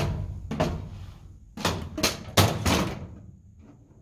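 Aluminium spar assembly knocking and clattering against the aluminium airframe as it is set into place: a run of short knocks over the first three seconds, the loudest about two and a half seconds in.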